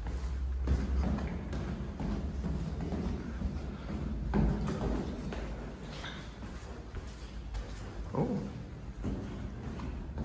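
Footsteps echoing in a stairwell, over a low steady hum.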